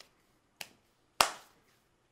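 Three short, sharp clicks in a pause between words: a faint one at the start, another about half a second in, and a loud crisp click a little past one second that rings out briefly.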